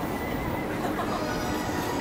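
Busy city street ambience: a steady hubbub of traffic and passers-by, with a brief pitched squeal about a second in.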